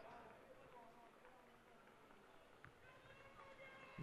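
Near silence: faint background room tone of the broadcast feed, with one faint click about two and a half seconds in.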